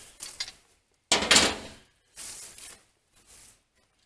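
A sharp click, then a few brief bursts of rustling and light clattering, the loudest about a second in.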